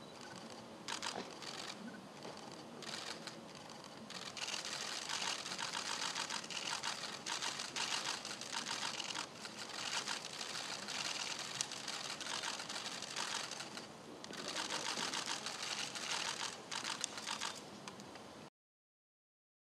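Many camera shutters clicking in rapid bursts, overlapping one another. Sparse at first, they grow dense about four seconds in, ease off briefly around fourteen seconds, then pick up again.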